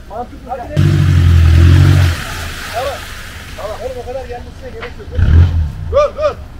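An off-road vehicle's engine revving hard for about a second as it pushes through deep mud, then a second, shorter burst of throttle near the end. Short shouted calls come between the revs.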